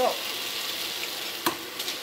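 Tomato-onion masala sizzling steadily in a nonstick frying pan, with a single sharp knock about one and a half seconds in.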